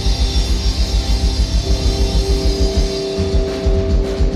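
Live rock band playing: electric guitars and bass over a drum kit, with a fast, steady pounding beat. About a second and a half in, a held guitar note rings out over the riff, and the cymbals thin out near the end.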